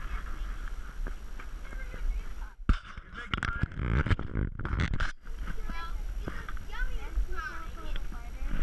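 Knocks and scuffs of climbing a wooden pole ladder, heard close on a body-worn camera. About two and a half seconds in comes a few seconds of muffled rumbling and bumping handling noise on the microphone, and faint voices are heard around it.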